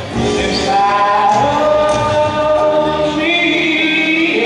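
A man singing a slow melody of long held notes into a microphone, amplified through the arena's sound system.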